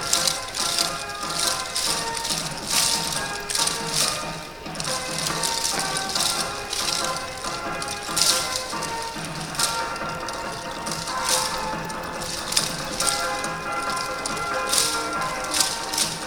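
Yosakoi dance music playing, with many wooden naruko clappers clacking in rhythm as the dancers shake them.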